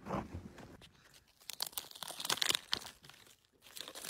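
Crackling, crunching rustle of leaf litter and brush close to the camcorder microphone, with scattered sharp clicks and a dense run of crackles in the middle. It cuts off abruptly at the end.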